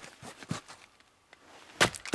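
Wetterlings Backcountry Axe splitting a small round of wood in one blow near the end: a single sharp crack as the blade goes through and the halves fly apart, split easily, "like nothing". A few light knocks come about half a second in.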